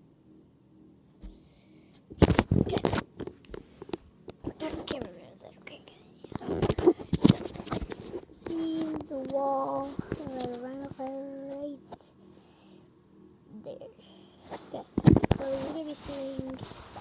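Clusters of knocks and thumps from the camera and a Nerf blaster being handled and set down on the carpet. In the middle, a child's wordless voice holds a few steady notes.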